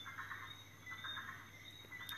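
A pause in speech: faint background noise with a few faint, short high-pitched chirps.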